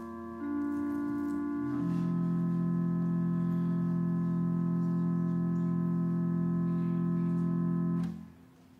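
Organ playing sustained chords: the chord changes twice in the first two seconds, then a final chord is held for about six seconds and cuts off at the end.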